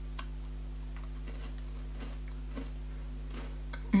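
Faint, irregular crunching clicks of a crisp lemon heart biscuit being chewed, over a steady low hum. A short "mh" of enjoyment comes at the very end.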